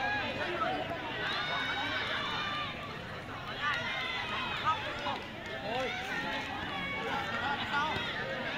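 Several young voices calling and shouting over one another, players and onlookers at a school football game, with one short knock near the middle.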